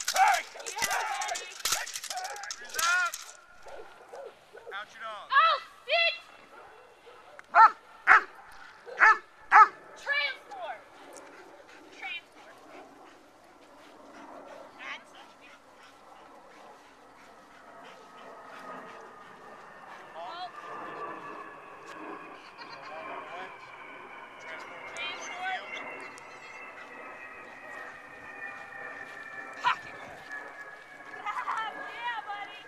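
A protection dog barking in short, sharp, loud barks, a run of them about five to ten seconds in, while it faces a decoy in a bite suit: the bark-and-guard of a protection exercise. Voices are heard at the start, and a faint steady tone slowly falls in pitch through the last third.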